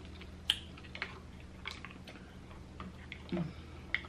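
Faint, scattered clicks and taps of cooked green-lipped mussel shells being handled and picked at on a plate, about half a dozen spread out, with a short low voice sound a little after three seconds in. A faint steady low hum runs underneath.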